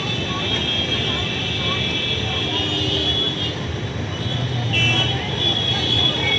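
Busy street ambience: road traffic running steadily, with indistinct voices of people around.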